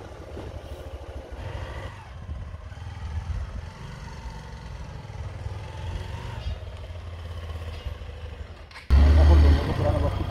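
Motorcycle engine as an adventure bike rides up and past, over a steady low rumble of wind on the microphone. About nine seconds in, a sudden, much louder wind buffeting cuts in.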